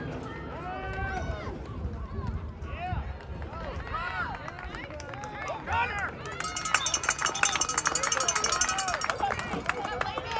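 Many voices of spectators and sideline players shouting and cheering over one another during a football play, growing louder and denser about six and a half seconds in.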